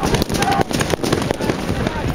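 A rapid, irregular series of sharp pops and bangs over a rough low rumble, with a man's brief shout about half a second in.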